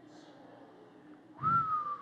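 A man whistling one long note into a handheld microphone, starting about 1.4 s in and sliding slowly down in pitch, with some breath noise underneath.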